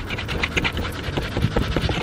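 A fluffy duster brushing quickly over the car dashboard close to the microphone, making a rapid run of scratchy rubbing strokes.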